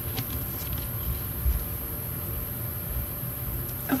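Fingers pressing and rubbing a sticker onto a paper planner page, giving a few faint taps and scratchy paper sounds over a steady low rumble.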